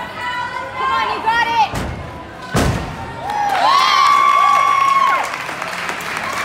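Teammates shouting and cheering for a gymnast on a floor exercise, with two heavy thumps on the sprung floor a little under a second apart about two seconds in, the thumps of his landing. One long held shout of cheering follows and fades near the end.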